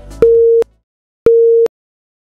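Two identical electronic beeps, each a single steady tone about half a second long and about a second apart, as the background music stops: a workout interval timer signalling the switch to the next exercise.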